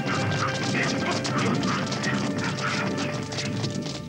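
Cartoon soundtrack music over a busy clatter of sound effects, with short high calls repeating a few times a second.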